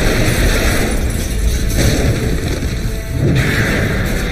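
Cartoon soundtrack: music with booming explosions over a constant low rumble.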